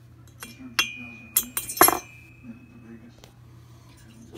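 Metal intake and exhaust valves being dropped into a stock Honda GX390 aluminium cylinder head: several sharp metallic clinks in the first two seconds, the loudest near two seconds in, with a high ring that hangs on for about a second after them.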